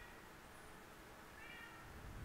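Near silence with a faint, brief high-pitched call about a second and a half in.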